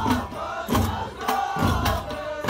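Ahwash: a chorus of men chanting together in sliding, drawn-out voices, punctuated by a few heavy strikes on large hand-held frame drums.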